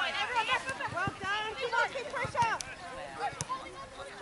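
Several distant voices of players and spectators calling and shouting over one another, too far off to make out words, with a few short clicks among them.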